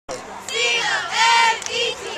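Several young voices shouting together in long, drawn-out yells, two long ones and a shorter one near the end, as a team or crowd hollers before a football kickoff.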